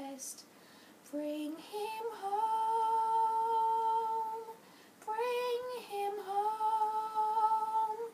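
Girl singing unaccompanied: after a short breath she holds a long note for about two seconds, pauses briefly, sings a few shorter notes, then holds another long note near the end.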